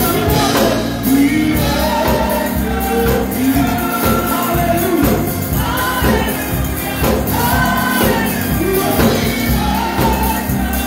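Live gospel praise singing by a small group of singers on microphones, voices together over a steady instrumental accompaniment.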